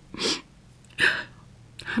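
A woman makes two short, breathy sniffling sobs, one just after the start and one about a second in, followed by the start of speech.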